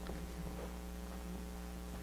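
Steady electrical mains hum, a low buzz with evenly spaced overtones, under faint room tone.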